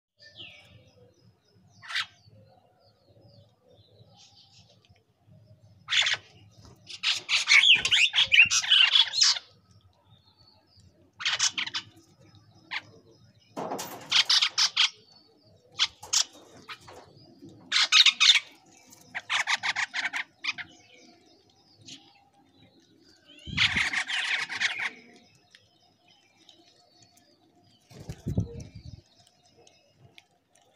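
Mynas calling in a series of short bursts with quiet gaps between, the longest and loudest burst running for about three seconds around eight seconds in.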